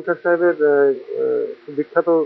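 A man's voice in short phrases over a faint steady hiss.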